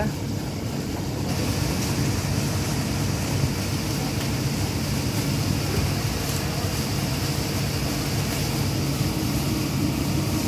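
Steady rushing splash of a park fountain's vertical water jet falling into its basin, with a low steady hum underneath.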